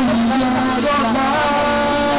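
Live band performing a Karen song through a PA, a singer's voice carrying the melody over sustained backing chords.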